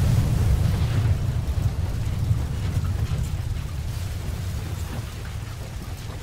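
A low rumbling noise with a faint hiss above it, slowly fading out.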